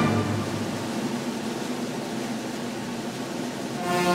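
Symphony orchestra playing a loud passage: a strong attack, then a sustained, noisy, rattling texture in which few clear notes stand out, with pitched chords returning near the end.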